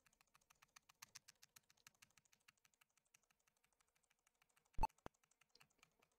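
Computer keyboard keys tapped rapidly and faintly, the Escape key spammed at about ten presses a second, thinning out after about three seconds. About five seconds in comes a short, louder beep-like blip, followed by one more click.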